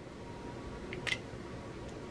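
Quiet room tone with two faint, short clicks about a second in and a softer one near the end.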